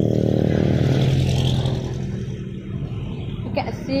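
A road vehicle's engine running close by, a steady low hum that is loud for about two seconds and then falls away.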